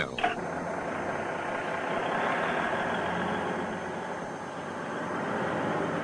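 Vehicle engine running steadily, with a fairly even level that dips slightly a little past the middle.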